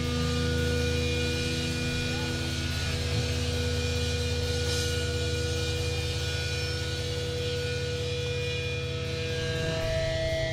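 Electric guitar and bass amplifiers on stage holding a steady, unchanging low drone of sustained notes and hum, with a higher tone joining near the end.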